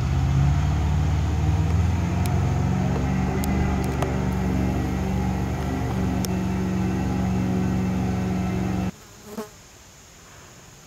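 A loud, low buzzing drone with a steady pitch that rises slightly over the first couple of seconds, then cuts off abruptly about nine seconds in, followed by one brief faint knock.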